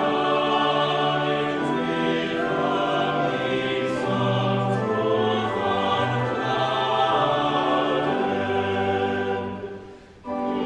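Choir and congregation singing a chorale hymn in unison with pipe organ accompaniment, sustained organ chords under the voices. The music breaks off briefly at the very end, a pause between lines of the hymn.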